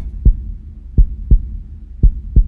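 Heartbeat sound effect: low double thumps, lub-dub, about once a second, with a faint low hum between the beats.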